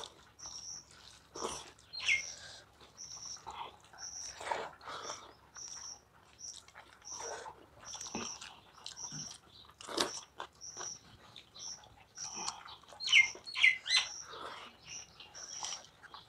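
Close-up sounds of chewing rice and curry eaten by hand, with wet mouth clicks. Behind them a short high chirp repeats about twice a second, and a few louder falling chirps stand out, about two seconds in and twice near the end.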